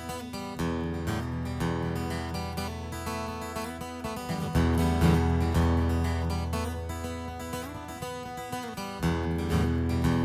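Solo steel-string acoustic guitar instrumental break: quick strummed and picked strokes over ringing bass notes, the chord changing about halfway with a harder strum.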